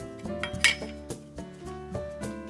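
A brief metallic clink of a metal cookie-cutting tool against the wooden board about half a second in, over background music.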